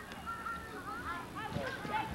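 Geese honking: several short, overlapping calls that rise and fall in pitch.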